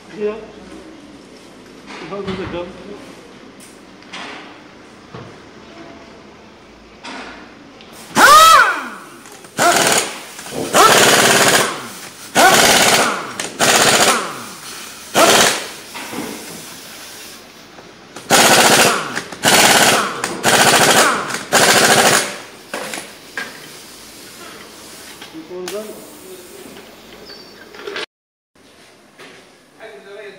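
Pneumatic impact wrench driving a car's wheel nuts: about ten loud, rattling bursts in quick succession, the first with a rising and falling whine as the tool spins up.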